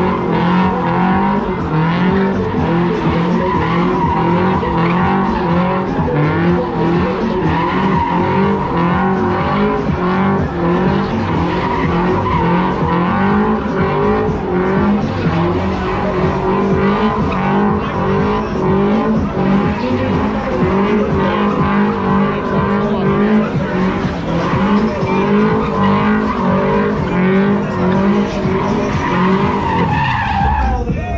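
Sports car doing donuts: its engine held at high revs with the pitch wavering up and down as the throttle is worked, over continuous tyre squeal from the spinning rear wheels.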